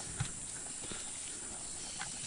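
Footsteps of people walking on a leaf-littered, muddy forest trail: irregular soft steps, over a steady hiss of insects.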